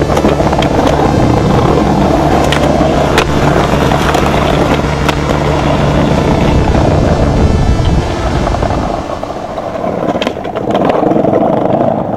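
Skateboard wheels rolling over paving stones, with a few sharp pops and landings of the board, over synth music with long held notes.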